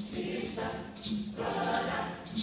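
A youth mixed choir singing in harmony, with crisp high hissing accents about twice a second.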